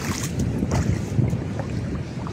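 Wind buffeting the microphone as a steady low rumble, with surf washing in the background.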